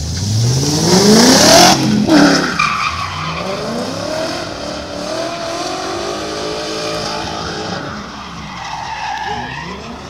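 A BMW E36 slalom race car accelerating hard from the start, its engine revving up steeply for about two seconds, with a loud burst as it shifts. It then keeps revving up and down through the slalom turns, with a hiss of tyre noise as it pulls away.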